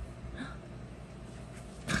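Quiet room tone, then near the end a sharp, high cry of pain begins: the disposable razor shaving a young man's cheek has just cut him.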